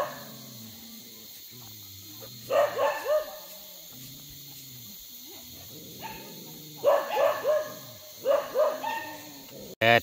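A dog barking in short runs of three or four quick barks, each bark dropping in pitch, the runs a few seconds apart.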